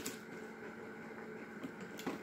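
Faint rustling of a paper gift bag and its tissue as hands rummage inside it, with a soft crackle at the start and a couple more near the end over a low, steady room hum.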